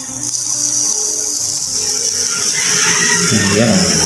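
Steady, high-pitched chorus of insects buzzing without a break.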